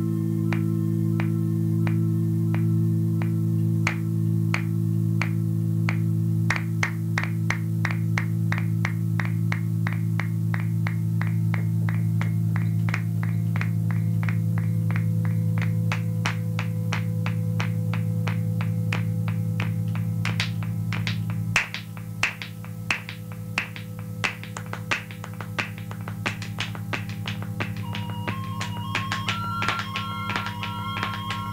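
Experimental analog electronic music: a steady low drone under a regular ticking pulse, about two ticks a second and then quickening to about three. About two-thirds of the way in, the drone cuts out on a loud click and the ticks carry on alone. Near the end a short melody of high stepped tones comes in.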